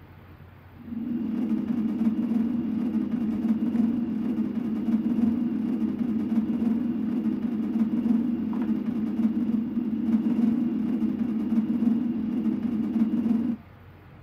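A steady low hum from the DVD menu's looping background sound, heard through a television speaker. It starts suddenly about a second in and cuts off suddenly near the end.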